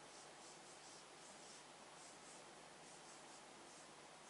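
Near silence, with faint, repeated rubbing strokes on a whiteboard: a cloth wiping off marker drawings, then a marker writing.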